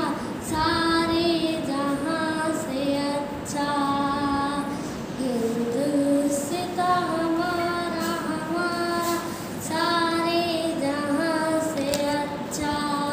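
A schoolgirl singing a patriotic Hindi song solo and unaccompanied. She holds long, wavering notes in phrases of a second or two, with short breaths between.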